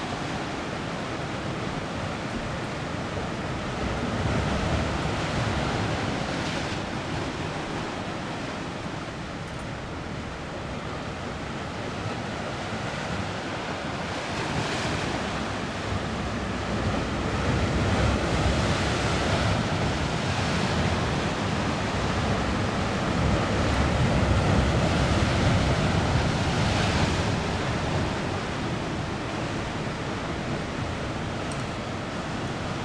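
Sea surf breaking on a rocky shore: a steady rushing that swells and eases slowly, loudest in the second half.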